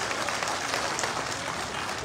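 A large crowd applauding, many hands clapping together at a steady level.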